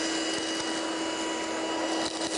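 Hoover Handy Plus 6-volt cordless handheld vacuum cleaner running steadily as it sucks up crumbs from a rug, a constant motor hum with a thin high whine.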